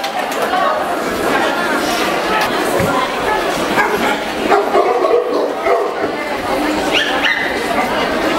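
Dogs barking amid the steady chatter of a crowd, with a brief higher-pitched dog cry about seven seconds in.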